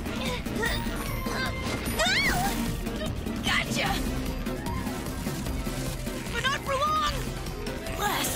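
Cartoon background music running under a few brief character yelps and exclamations, with crash-like effects as the characters tumble.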